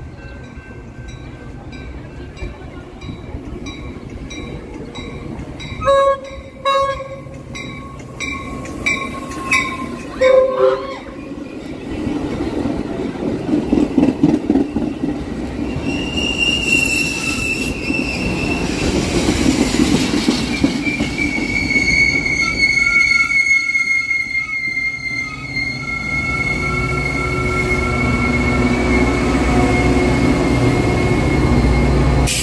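Metra commuter train approaching and passing: a bell ringing steadily and several short blasts of the cab car's horn, then the bilevel gallery cars rolling by with a long high-pitched wheel squeal, and the EMD F40PHM-2 diesel pushing at the rear rumbling up close near the end.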